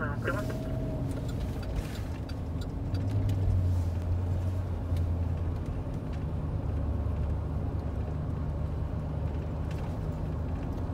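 Engine and road noise heard from inside a moving patrol car: a steady low drone that swells a little from about three seconds in and then settles.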